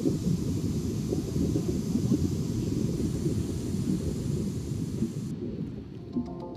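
Underwater rumble and bubbling in a dive pool, a dense low crackle of scuba divers' exhaled bubbles, easing off near the end.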